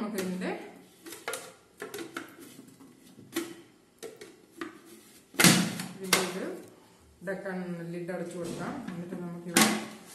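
Clear plastic bowl of a Philips food processor being handled and fitted onto its motor base, with sharp plastic clunks and clicks, the loudest about five and a half and nine and a half seconds in.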